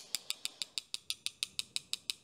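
Paintbrush tapped rapidly against a thin rod to flick a fine splatter of watercolour onto the paper: an even run of light clicks, about eight taps a second.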